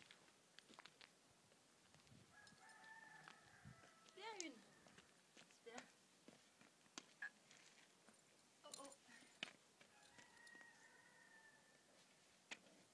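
A faint rooster crowing: a long call of held notes about two and a half seconds in that ends in a falling, wavering note, then a weaker crow near the end. Scattered light clicks between the calls.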